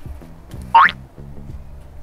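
Background music with steady low notes, and about three-quarters of a second in a comic cartoon sound effect: one quick, loud upward whistle-like glide.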